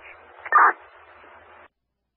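Two-way fire radio (scanner) static at the end of a transmission: a narrow-band hiss with one short burst about half a second in, cut off suddenly by the squelch a little before the end.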